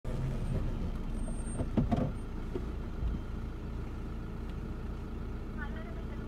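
Steady low rumble of a car's engine running, heard from inside the cabin, with a brief faint voice near the end.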